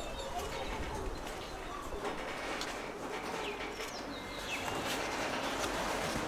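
Outdoor background of birds chirping and calling at intervals over a steady ambient hum, with a dove-like cooing among them.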